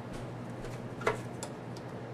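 Fabric being handled and lined up under a sewing machine's presser foot: a few faint clicks and one brief scrape about a second in, over a steady low electrical hum. The machine is not stitching.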